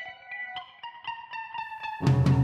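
Quiet intro music: a slow melody of single plucked notes, one after another, each ringing briefly into the next.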